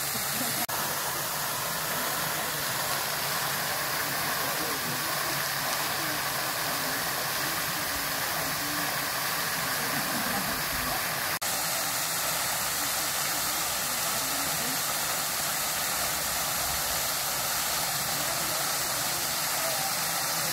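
Water jetting high into the air from a burst pipe in the road, a steady, unbroken rush of spray falling back onto the wet tarmac.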